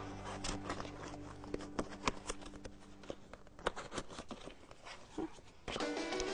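Plastic lamp pieces clicking and rattling as they are handled and hooked together, a scatter of light, irregular clicks and taps.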